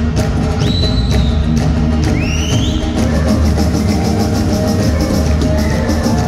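A live pop-rock band plays, with electric guitars, bass guitar and a drum kit keeping a steady beat. Two short, high sliding notes rise out of the mix, about one and two seconds in.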